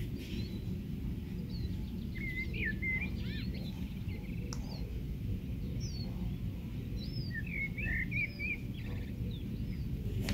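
Small birds chirping in short bursts over a steady low rumble of background noise, busiest a couple of seconds in and again near the end.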